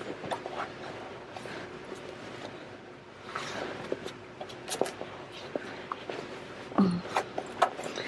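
Fabric rustling and rubbing as layers of a sewn purse are pulled and pushed through a turning gap by hand, with small scattered clicks and a louder swell of rustling midway. A brief vocal sound near the end.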